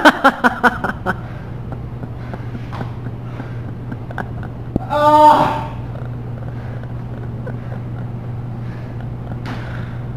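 A worn-out man lying on a gym mat after a hard timed workout, breathing hard, with one short groan about five seconds in, over a steady low hum.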